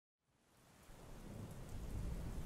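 Storm ambience of steady rain with a low rumble underneath, fading in from silence and growing steadily louder.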